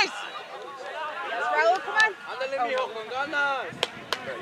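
Overlapping, indistinct voices of players and spectators calling out and chattering at a soccer match, with a short sharp knock about two seconds in and another near the end.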